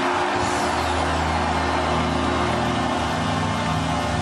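The Calgary Flames' arena goal horn sounds one long steady blast of several tones at once, signalling a home goal, over a cheering home crowd.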